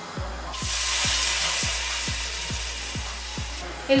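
White wine poured into a hot pan of toasted risotto rice, sizzling hard as it hits and slowly dying down over about three seconds, with the wine boiling off. A steady background music beat runs underneath.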